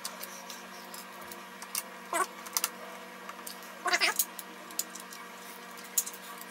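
Scattered light clicks of small screwdriver bits and tools being handled, over a steady low hum. About two and four seconds in come two short pitched calls like a cat's meow, the loudest sounds here.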